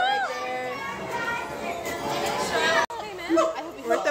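Children's and teenagers' voices chattering and calling out over one another. The sound breaks off suddenly about three seconds in, and more talking follows.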